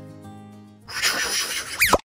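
Soft background music fades away, then about a second in a sudden burst of hiss-like noise cuts in and ends in a quick downward sweep: an editing transition sound effect.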